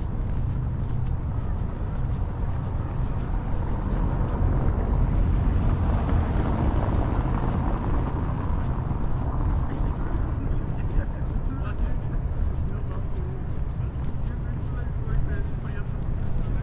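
Wind buffeting the microphone as a steady low rumble, with a broader swell of noise about five to ten seconds in.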